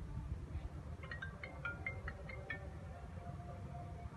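A mobile phone ringtone: a quick run of about eight bright, marimba-like notes in a second and a half, over a low steady rumble.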